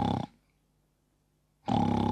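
Snoring voiced as a story sound: one snore ending just after the start and a second near the end, with silence between.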